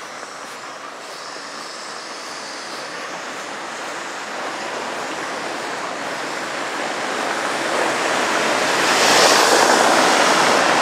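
Small white box truck coming up from behind on a cobblestone street, the rumble of its tyres on the cobbles and its engine growing steadily louder until it draws alongside near the end.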